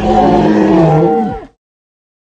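A loud, deep, drawn-out call like a howl or a moo, held for about a second and a half, then dropping in pitch before it stops abruptly.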